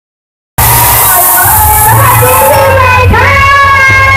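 Loud amplified live music with a singing voice, over a cheering crowd, overloaded and distorted. It starts suddenly about half a second in, with a bright hiss over everything for the first couple of seconds.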